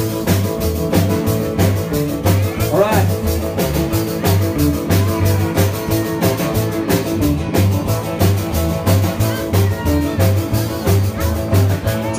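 Live rock-and-roll band playing an instrumental intro: upright bass pulsing in an even beat under guitars and drums.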